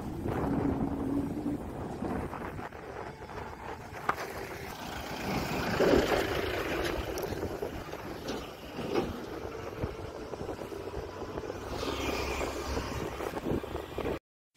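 Road traffic passing with wind on the microphone; the loudest vehicle goes by about six seconds in.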